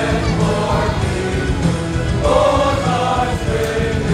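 Mixed school choir of boys and girls singing a song in held notes, with a louder, higher phrase beginning about two seconds in.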